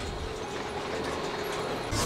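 Steady low mechanical rumble with a faint clatter, in a bowling-alley scene on a TV episode's soundtrack.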